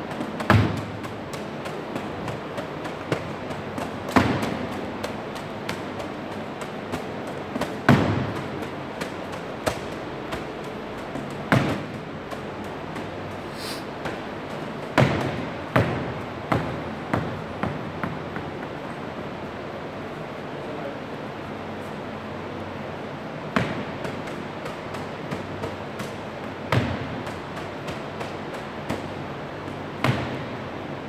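Medicine balls and basketballs thrown against a cinder-block gym wall, each landing with a thud every few seconds, with a short echo after the loudest ones. Smaller bounces and taps fall in between.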